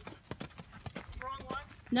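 Hoofbeats of a ridden horse on a gravel arena surface, a quick run of crunchy strikes, a few each second.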